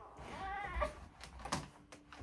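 A faint, short, high-pitched cry that rises and falls over under a second, followed by a few light clicks.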